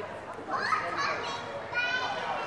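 People talking in a large hall, with a high-pitched voice standing out about half a second in and again near the end.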